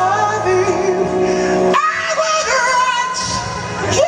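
Male soul singer singing a slow R&B ballad live over band accompaniment, the vocal holding and bending long notes with a brief break a little under halfway through.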